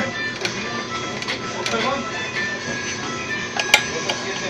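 Hercules five-thread industrial overlock (serger) running steadily as it stitches a test seam on lycra, with the machine set for pure lycra.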